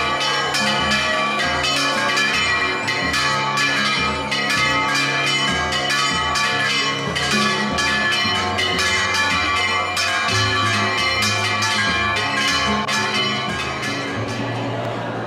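Church bells ringing a rapid peal, several quick strikes a second with their ringing tones overlapping.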